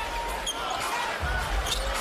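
A basketball dribbled on a hardwood court over the steady background noise of an arena crowd.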